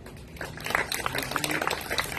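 Scattered hand clapping from a small crowd, starting about half a second in, in answer to a winner being announced.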